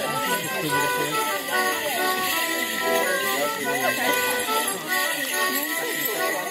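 A Morris dance tune played on folk instruments, with the dancers' leg bells jingling, over the chatter of onlookers.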